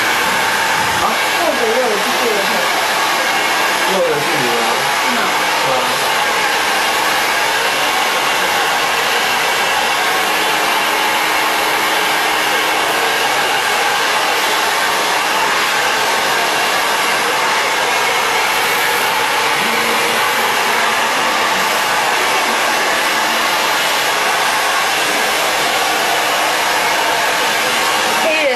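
Hand-held hair dryer blowing steadily while hair is blow-dried and styled.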